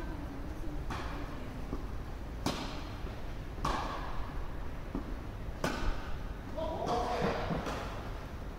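Tennis ball being struck back and forth with rackets in a rally, a sharp hit every second or two, echoing in a large covered hall. A voice is heard briefly near the end.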